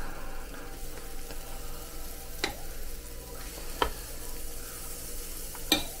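Waffle batter sizzling steadily on the hot, oiled plate of a mini electric waffle maker, with a metal spoon clicking sharply against the glass batter jug three times as more batter is spooned on.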